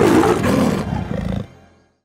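A black panther's roar, a big-cat snarl voicing the animated jungle panther. It sets in loud and drops away about a second and a half in, fading out near the end.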